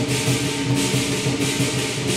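Southern lion dance percussion band playing: a big drum beating with cymbals clashing about three times a second over a steady ringing gong tone.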